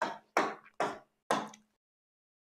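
Four short, light knocks about two a second, each dying away quickly.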